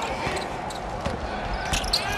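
A basketball being dribbled on a hardwood court: repeated short thuds of the ball on the floor.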